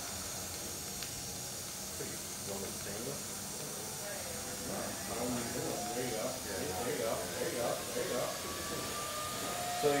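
DC TIG welding arc on aluminum, hissing steadily while filler rod is fed into the puddle.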